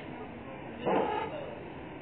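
A single short, loud call about a second in, over a steady murmur of background voices.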